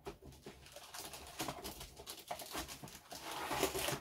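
Clear plastic bag around a plastic model-kit sprue rustling and crinkling as it is picked up and handled, with small clicks and crackles, growing louder toward the end.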